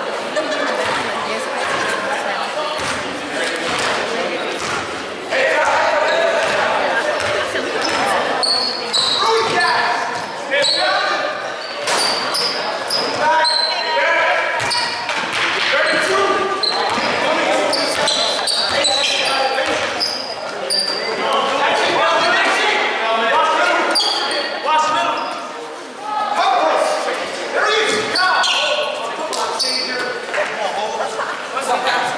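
Basketball being dribbled on a hardwood gym floor, with many sharp bounces, under the chatter and shouts of players and spectators echoing in a large gymnasium.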